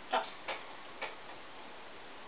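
Blue-and-gold macaw making three short clicks within about a second, the first the loudest.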